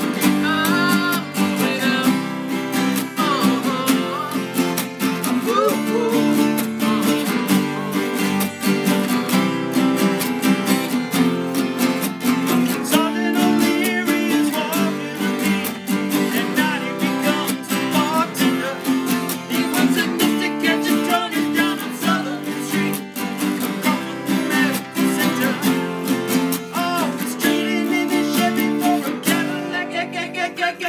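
Several acoustic guitars strumming chords together with a steady beat.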